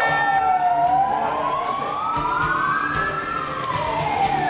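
Sirens of police vehicles wailing. Two or more sirens sound at once, their pitches sliding slowly up and down and crossing each other.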